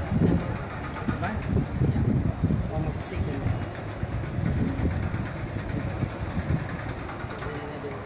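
Wind buffeting the microphone in uneven gusts of low rumble, with people talking indistinctly in the background.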